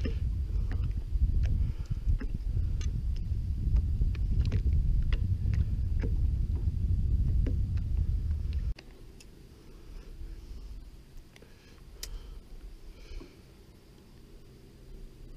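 Wind buffeting the camera microphone: a low rumble with scattered light clicks and taps, which cuts off suddenly about two-thirds of the way through, leaving only a few faint ticks.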